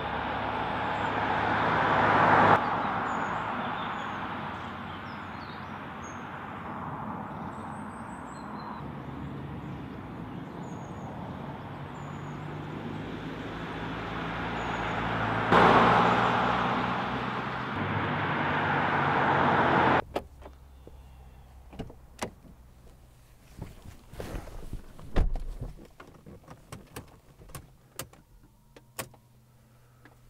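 Mercedes-Benz C300 BlueTEC Hybrid diesel-hybrid estate driving past on a road: steady tyre and engine noise, growing louder as the car comes near, with birds chirping. About two-thirds through the road noise stops and only scattered clicks and knocks are heard inside the stationary car, with one heavier thump.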